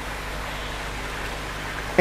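Steady rushing of water: an even hiss with no separate splashes or knocks.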